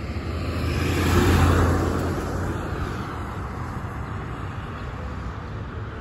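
A car driving past on the road, loudest about a second and a half in, then fading into steady road noise.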